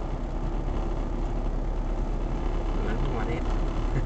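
Steady low road and engine noise inside a moving car's cabin at about 50 km/h, with faint voices about three seconds in.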